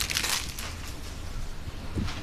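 A brief rustle or crinkle in the first half-second, then quiet handling noise, as food is handled while a sandwich is assembled.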